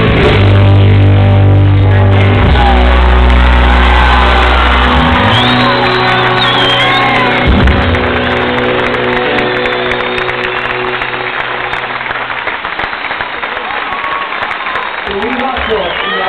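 Live rock band holding out the final chords of a song, heavy bass under it and a single drum hit about halfway, the chords then ringing out and fading. Crowd cheering and whistling rises over the ending and carries on alone near the end.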